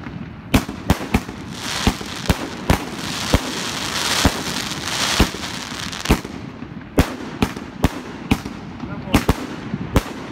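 2-inch, 50-shot fireworks cake firing: sharp launch and burst reports, about two a second at irregular spacing, with a spell of crackling hiss from bursting stars a couple of seconds in.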